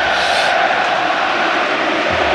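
Steady noise of a large football stadium crowd.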